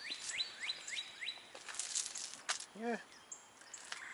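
A songbird singing a quick series of sharply falling whistled notes, about four a second, which stops a little over a second in; a few faint clicks follow.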